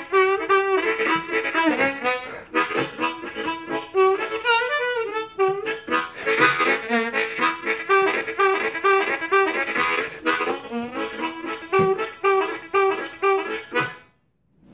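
Ten-hole diatonic harmonicas, a Kongsheng Amazing 20 and a Hohner Special 20, played in turn for comparison. Each plays a short repeated phrase with some bent, sliding notes, with brief breaks about two and a half seconds in and at ten seconds.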